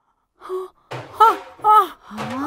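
Shocked gasps: a short breath about half a second in, then two brief voiced cries falling in pitch.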